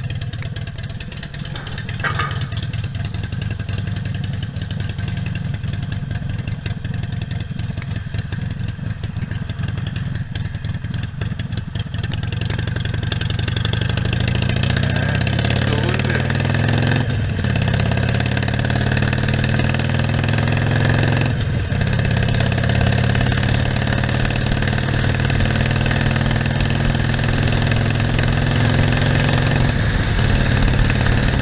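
Harley-Davidson Iron 1200's air-cooled V-twin running low and steady at first, then pulling away with its note rising. It goes up through two gear changes, each a short dip, and settles into a steady cruise.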